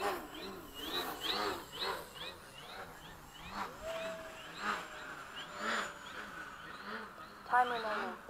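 A bird calling over and over in short rising-and-falling chirps, about two to three a second, with a louder burst near the end.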